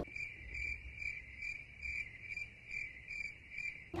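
Comedy "crickets" sound effect: a cricket chirping in a steady high trill that pulses about twice a second, starting and stopping abruptly. It is the stock cue for an awkward silence.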